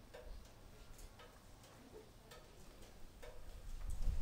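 Faint, irregular clicks and taps, several a second apart, over quiet outdoor ambience with a low rumble.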